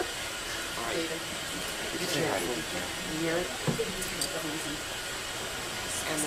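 Indistinct voices of people talking quietly at a distance, over a steady hiss of room noise, with a soft knock a little past halfway.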